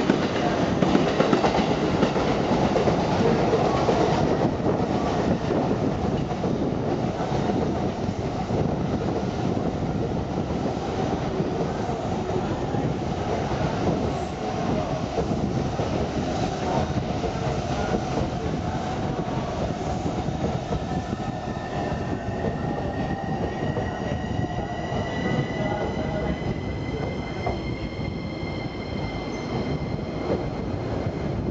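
A JR East E233-series and E231-series mixed commuter train running along the platform as it slows to stop, with a steady rumble and wheel clatter. Over the last third a high whining, squealing tone rises slightly in pitch.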